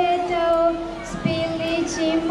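Children singing together in one melody line, holding long notes that step slowly up and down.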